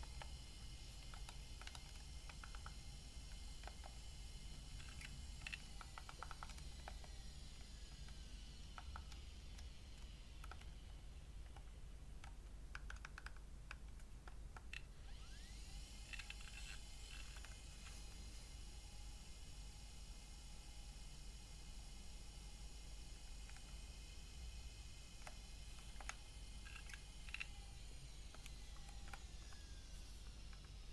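Faint clicks of the plastic buttons on a Personal Jukebox PJB-100 player being pressed, coming in scattered clusters over a quiet, steady background.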